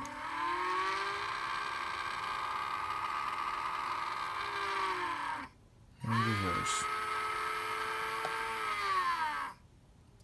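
Tiny electric drive motors in a model tug's azipods whining under a 10-amp speed controller, heard as a clean motor sound. The pitch rises as they spin up and holds steady for about five seconds, then winds down. They run up again for about three and a half seconds and wind down near the end.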